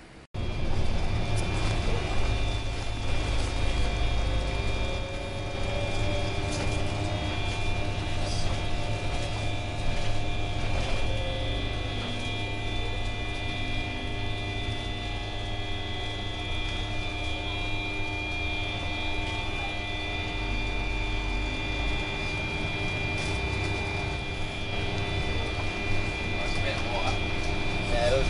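Steady engine and road rumble heard from inside a moving vehicle, with a constant whine.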